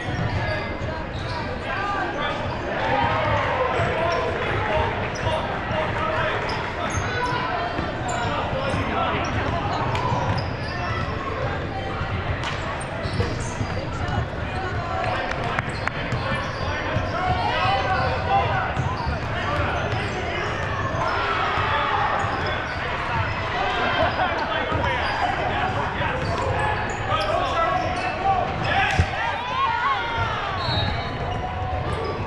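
A basketball being dribbled on a hardwood gym floor during live play, with players and spectators calling out and talking, echoing through a large hall.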